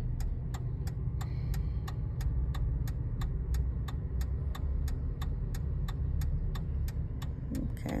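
A car's turn-signal indicator ticking steadily, about three ticks a second, over the low hum of the engine idling with the car stopped.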